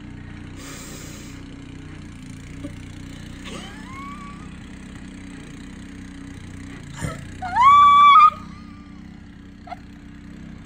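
Rear-tine rototiller's small engine running steadily. A faint rising high-pitched cry about three and a half seconds in, and a louder high-pitched cry, rising then held for under a second, about seven and a half seconds in.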